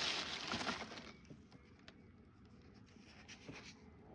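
Plastic carrier bag rustling as a hand digs into it, loudest in the first second. This is followed by faint scattered clinks and ticks of old coins and metal finds being moved about inside the bag.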